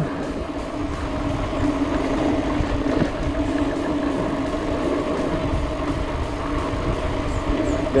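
Mountain bike rolling fast down a concrete lane. A steady buzzing tone sits over wind and tyre rumble on the helmet or handlebar camera's microphone.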